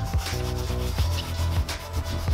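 Dauber brush rubbing shoe cream into the leather of a loafer in short strokes, over background music.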